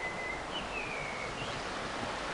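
Steady rushing of a small stream, with a few faint high whistling notes over it in the first second or so.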